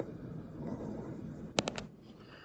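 Faint scratching of a stylus drawing on a tablet, with three quick clicks about one and a half seconds in.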